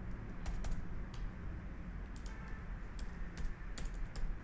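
Computer keyboard being typed on: several separate keystrokes at an uneven pace, over a faint low background hum.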